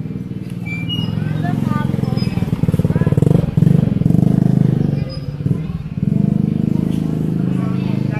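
Motorcycle engine running close by, loudest in the middle, easing off briefly and then rising again, with passers-by talking over it.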